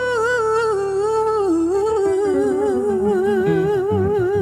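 A female singer holds a long note with vibrato, sliding down a little part way through, over a Yamaha grand piano accompaniment. The piano moves down through a descending bass line in the second half.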